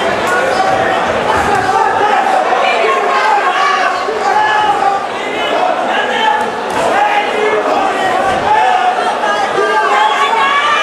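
Ringside crowd at a Muay Thai fight: many voices shouting and calling out over one another, echoing in a large hall, with a few dull thuds.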